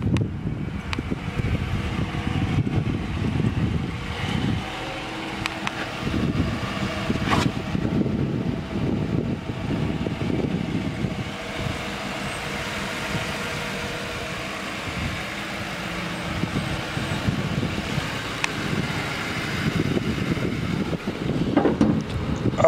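The 4.6-litre V8 of a 2007 Ford Crown Victoria Police Interceptor idling steadily, heard from outside the car, with a single sharp click about seven seconds in.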